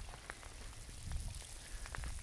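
Faint outdoor background: a low rumble with a few scattered soft ticks.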